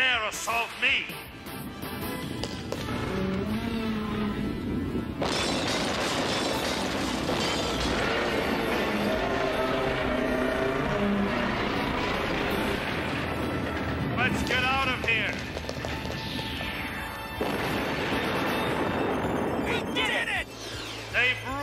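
Animated robot-battle soundtrack: dramatic music with dense noisy impact and rumble sound effects, heaviest from about five seconds in to about seventeen seconds. A short vocal cry comes about fifteen seconds in.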